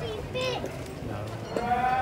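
Passers-by talking in the background, with one long drawn-out call starting near the end.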